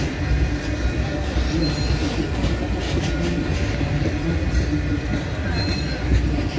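Freight train of tank cars rolling slowly past at close range: a steady rumble of steel wheels on rail, with scattered clicks as the wheels cross rail joints.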